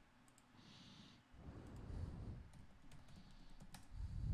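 Faint typing on a computer keyboard: scattered light key clicks that bunch together in the second half, as a search word is typed in. A soft low rumble comes about two seconds in.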